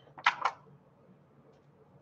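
Two or three short clicks and rustles, a little before half a second in, as a small clear craft item is picked up and handled on the table. Then faint room tone.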